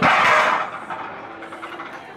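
A loud, brief yell or shout at the start, lasting about half a second, then fading into crowd chatter.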